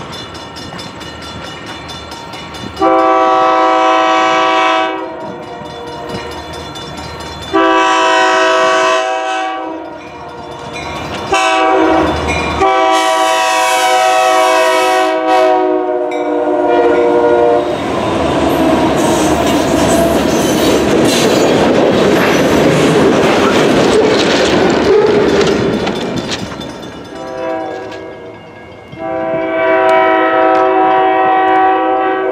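Diesel freight locomotive's multi-chime air horn sounding two long blasts, a short one and a long one, the standard signal for a grade crossing, as the train approaches. The lead locomotives then pass close by with a loud steady roar of engines and wheels on rail, and the horn sounds again near the end.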